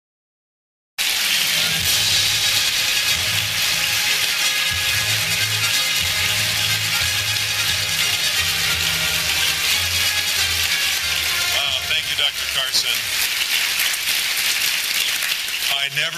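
Large audience applauding loudly after a speech, with music playing underneath. The sound cuts in about a second in, after a brief silence.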